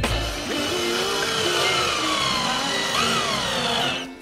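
Cordless drill running, driving a screw into a chipboard furniture panel, its motor whine gliding up and down in pitch as the screw draws in.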